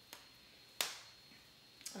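Three short, sharp snaps, the loudest about the middle, as hands tug and pull at a packaged bundle of synthetic afro twist crochet hair to free it without scissors.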